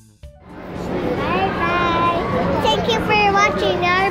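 A few piano notes end, then the busy din of an indoor playground rises within about a second: many children's voices shouting and squealing over a steady low hum.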